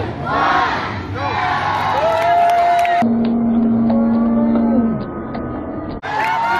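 Fair crowd shouting together in a countdown to the start of a pig race, then a long held shout at a steady pitch that drops off near the end.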